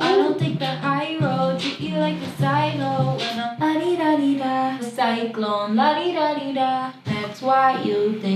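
A woman singing a melodic pop hook over a beat with a steady bass line underneath.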